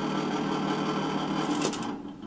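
The fan motor of a 1950s Toastmaster electric space heater running noisily with a steady mechanical drone, its fan bearing short of oil. Near the end the dial clicks and the fan winds down.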